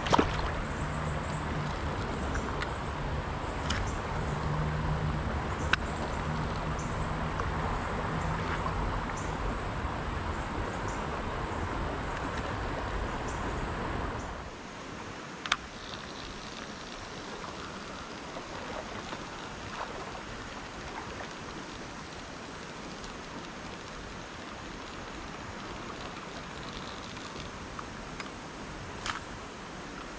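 Creek water running over rocks, a steady rushing hiss. For about the first fourteen seconds a low rumble sits over it and it is louder, then it drops to a quieter, even flow with a few faint clicks.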